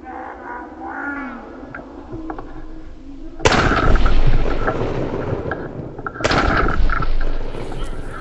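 Two shotgun blasts about three seconds apart, each sudden and loud with a long echo dying away after it.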